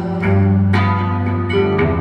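Hollow-body archtop guitar played solo: a few plucked notes and chords ring over a held low note.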